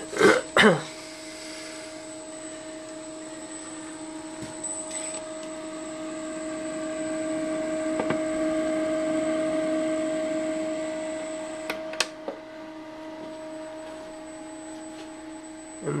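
Aristo-Craft E8/E9 large-scale model diesel locomotives running on track: a steady electric-motor and gear whine that grows louder toward the middle and then eases off. There are a couple of sharp clicks about twelve seconds in. A cough right at the start.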